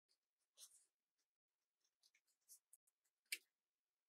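Faint snips of small scissors cutting thin craft paper, a few scattered cuts, then a sharper click a little after three seconds as the scissors are set down on the table.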